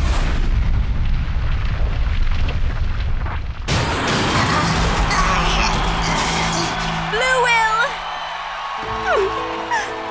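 Cartoon battle sound effects over dramatic music. A rising whoosh opens into a long rumbling blast, and a second, brighter burst of noise cuts in sharply about four seconds in. Near the end, calmer music with held notes takes over, with brief gliding voice-like cries over it.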